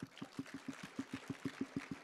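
Audience applauding, with one pair of hands close by clapping fast and evenly, about eight claps a second, over the wash of the crowd.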